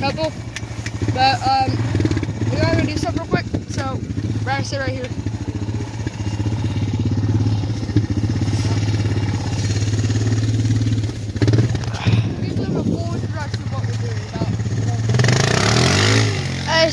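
Four-wheeler (ATV) engine idling steadily, with voices over it in the first few seconds and a louder rush of noise near the end.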